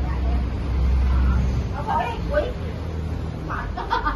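Epson L805 inkjet printer running a banner print job: a low, steady hum that swells and dips as it prints, with voices talking briefly in the background.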